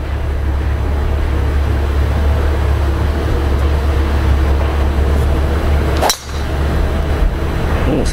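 A golf driver strikes a teed ball about six seconds in: one sharp crack. Under it, a steady low rumble of wind on the microphone.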